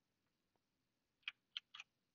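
Near silence, then three faint, quick clicks a little past halfway, from working a computer's mouse and keys.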